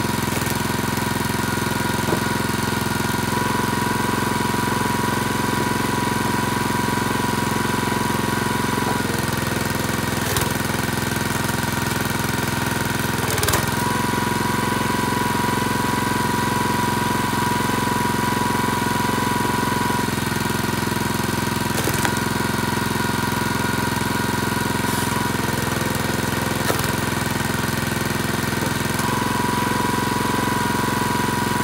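Small gas engine of a Split Fire 2265 hydraulic log splitter running steadily, its note shifting a few times. Several short sharp cracks and knocks of hickory being split and set down, the loudest about halfway through.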